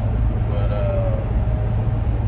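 Steady low road and engine rumble heard from inside the cabin of a moving vehicle.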